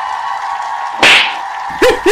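A single sharp slap sound effect about a second in, over a steady held tone. Snickering laughter starts near the end.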